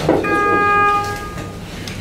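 A brief knock, then a single steady pitched tone with a buzzy, overtone-rich quality, held for about a second before it cuts off.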